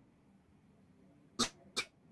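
Near silence, then two short, sharp mouth noises from a man, about a second and a half in, just before he starts speaking again.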